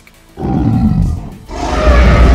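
Deep monster roar sound effect, heard twice: a first roar falling in pitch, then a louder second one from about one and a half seconds in, over a heavy low rumble.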